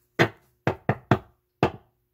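Knocking: five sharp knocks at uneven intervals.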